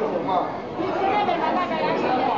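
Indistinct chatter of many diners talking at once in a busy restaurant dining hall.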